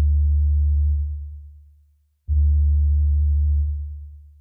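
Intro of a hip-hop beat: a very deep, sustained bass note fading away over about two seconds, then a second identical note a little past halfway, fading again.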